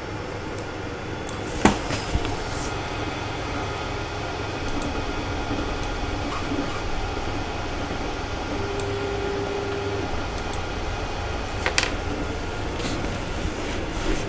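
Steady hum of fans with a couple of light knocks as a filament spool and boxes are handled on a workbench; a short steady tone sounds for about a second and a half past the middle.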